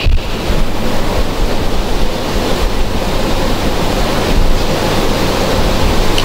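A steady rushing noise with a low hum underneath, holding at an even level throughout.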